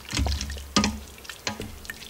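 A slotted wooden spatula stirring a thick ground-beef and tomato-paste mixture in a stainless steel Instant Pot inner pot. Wet stirring with three sharp knocks of the spatula against the pot.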